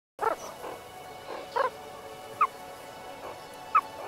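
Meerkats giving short, high calls, four louder ones about a second apart with fainter ones between, over soft sustained background music.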